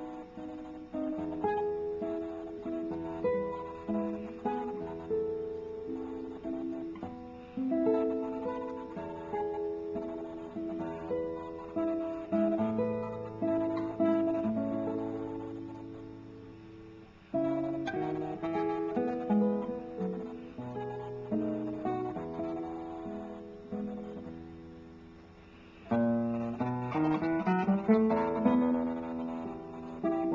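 Solo classical guitar with a cedar top and Indian rosewood back (a 2009 Kris Barnett) played fingerstyle: a slow melody over bass notes. Twice the notes are left to ring and fade before playing resumes, and near the end it moves into fuller, quickly rolled chords. Recorded through a laptop microphone.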